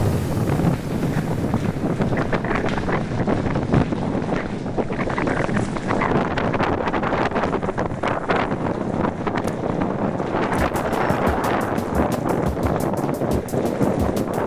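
Wind buffeting the microphone over the rattle and crunch of a 29er mountain bike rolling over a rough gravel tunnel floor, with many small irregular knocks and clatters.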